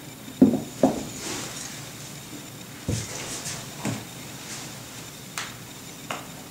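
Two quick knocks about half a second in, then a few lighter knocks and taps: a leather cowboy boot being set down on a bathroom countertop and small items handled beside it.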